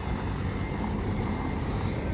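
Steady low rumble of town street traffic, with no single passing vehicle or other event standing out.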